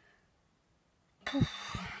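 After about a second of near silence, a woman blows out a loud "puh" breath, an exhale of exhaustion from the heat.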